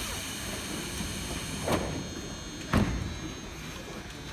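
Tobu Railway commuter train's sliding passenger doors closing before departure: two knocks about a second apart, the second a louder thud, over the steady station background.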